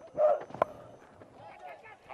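Cricket bat striking the ball once, a sharp crack a little over half a second in, just after a short louder vocal burst at the delivery; faint crowd voices follow.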